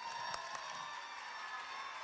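Audience applauding and cheering, with a faint steady tone held above the clapping.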